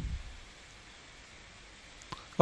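Faint steady hiss of room tone, with a brief low rumble fading out in the first half second.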